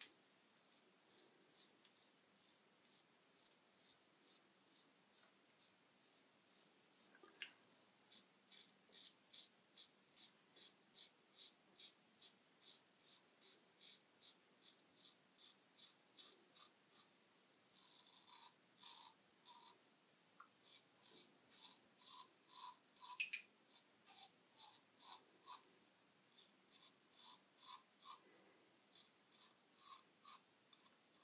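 Merkur Progress adjustable double-edge safety razor with a Tiger Superior stainless blade scraping through lathered stubble in short, rhythmic strokes, a bit over two a second. The strokes are faint at first and louder from about eight seconds in.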